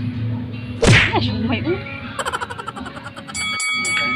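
Edited-in sound effects: a sharp whack about a second in, then a quick run of high twinkling ticks and a ringing bell-like ding that holds near the end.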